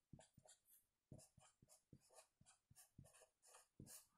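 Very faint, short strokes of a marker pen writing on a board, about a dozen scattered through, in near silence.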